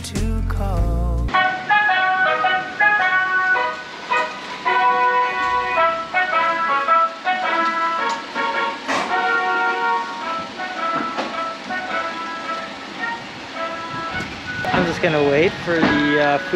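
A jingle melody played through a small, tinny loudspeaker, typical of a Japanese mobile grocery truck announcing itself in the street: a bright tune of short held notes with no bass. Before it, a second of edited background music cuts off abruptly, and a man starts talking near the end.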